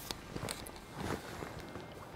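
Faint scattered clicks and knocks of pole-fishing tackle being handled on the bank while a hooked fish is played.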